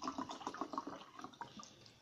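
Mineral water poured from a bottle into a glass of tequila and lime; the pour tails off early and the drink fizzes with fine crackling bubbles that fade away.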